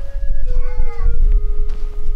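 A short animal cry that bends up and down in pitch about half a second in, over background music holding low notes that step down in pitch, with a deep steady rumble underneath.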